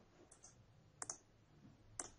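Near silence broken by short computer clicks, one about a second in and another at the end, as the lecture slide is advanced.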